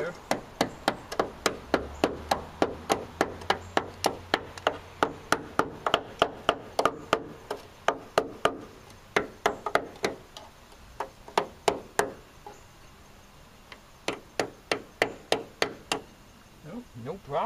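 A screwdriver tip jabbing repeatedly at the rusty steel floor of a 1990 Ford Econoline van's step, probing for metal weakened by rust. Quick sharp taps come about three a second for the first eight seconds, then a few scattered ones, then another quick run near the end.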